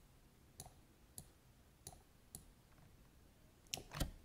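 Near silence broken by about half a dozen faint, separate computer mouse clicks, spaced roughly half a second apart.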